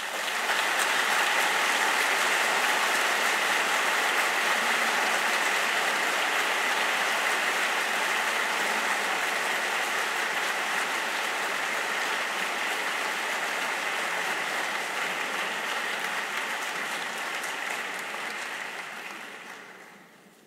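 Audience applauding steadily at the end of a talk, dying away over the last few seconds.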